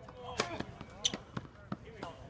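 A tennis racket strikes the ball on a serve about half a second in, followed by a few more sharp pops of the ball off racket and hard court, the loudest about a second in.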